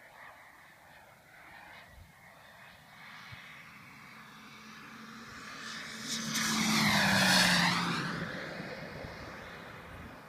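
Ultraflash radio-controlled model jet making a fast, low pass: its jet whine builds over several seconds, is loudest about seven seconds in, drops in pitch as it goes by, and then fades.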